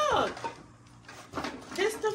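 People's voices in a small room. A voice trails off at the start, then comes a short lull. A few brief knocks or rustles follow, and voices pick up again near the end.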